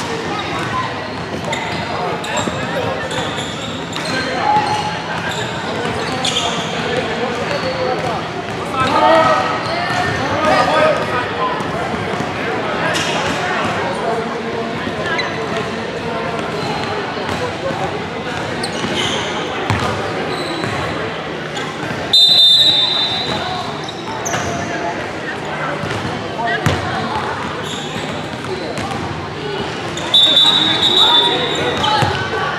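Busy gym ambience: many voices talking and calling in a large echoing hall, with basketballs bouncing on a hardwood court. A short shrill whistle sounds about 22 seconds in and again right at the end.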